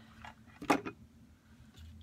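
A single sharp clack about two-thirds of a second in, as a hot glue gun is set down on the craft desk; otherwise only quiet room tone.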